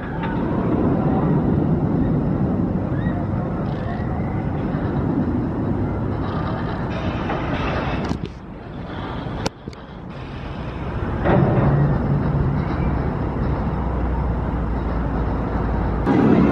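Steel roller coaster train rumbling along its track, steady and loud, briefly cut off twice around the middle and swelling louder about two-thirds of the way through.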